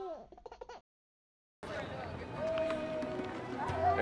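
The tail of a short musical logo sting with sliding tones cuts off under a second in; after a brief dead silence, outdoor background sound with faint voices comes in.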